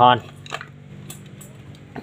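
A few light metallic clinks and taps as a soldering iron and small hand tools are handled, over a low steady hum.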